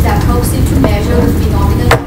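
A woman's voice speaking over a heavy, steady low room rumble, with one sharp click just before the end.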